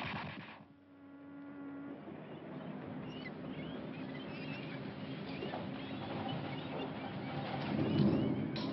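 Dockside ambience on a film soundtrack. A loud noisy sound fades out in the first second. A low steady tone is held for about a second. Then comes a continuous busy background with many small high chirps, like birds.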